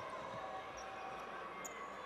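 Faint basketball arena ambience: a low, even background of the hall with a few brief faint high squeaks.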